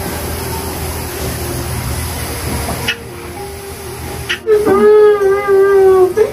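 A person crying aloud in grief. After a few seconds of low background noise, a long wailing cry starts about four and a half seconds in and is held on one steady pitch.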